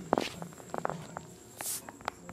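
Phone handling noise: a few soft knocks and clicks, bunched just before a second in, a brief rustling hiss later, and a faint low hum underneath.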